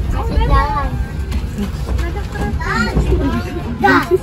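Small children's high voices chattering and squealing in short bursts, over the steady low rumble of a moving economy train carriage.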